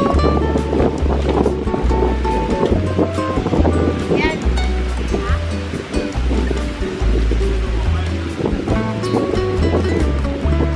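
Background music with a steady beat: a bass line moving in held steps under a short repeating melody.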